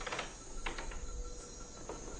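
Faint, steady background ambience with three soft clicks.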